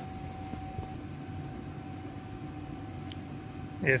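Steady background noise of a large shop bay: an even hiss and low hum with a faint steady whine that stops near the end.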